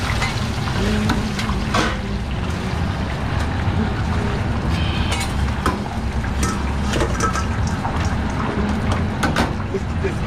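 Deep-fryer oil bubbling and sizzling around baskets of chicken wings over a steady low machine hum, with a few scattered metal clinks as a fryer basket is lifted out and the wings are tipped into a steel bowl.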